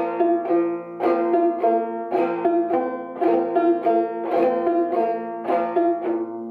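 An 1888 Luscomb five-string banjo, tuned about two frets below gCGCD, picked in the basic bum-diddy (boom-chicka) rhythm. It is a steady, even run of plucked notes, about two strong beats a second with lighter notes between.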